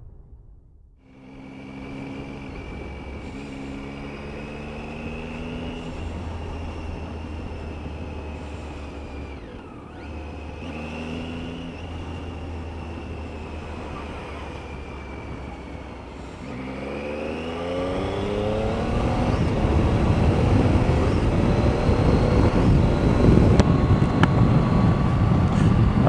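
Triumph Tiger's three-cylinder engine idling steadily with the bike at a standstill, then revving up through the gears as it pulls away about two-thirds of the way through. Wind noise on the helmet microphone grows louder as the speed rises.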